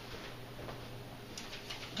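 Quiet room tone with a steady low hum and a few faint ticks near the end.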